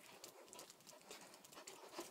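Faint, irregular clicking of a pit bull puppy's claws on a tile floor as she steps and hops about.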